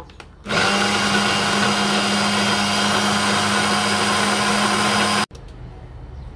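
Braun hand blender's motor running on its chopper bowl attachment, chopping strawberries. It runs at one steady pitch, starts about half a second in and cuts off suddenly near the end.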